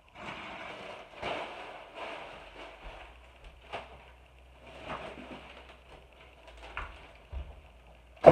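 Thin plastic grocery bags rustling and crinkling as they are handled and rummaged through, with a few soft knocks.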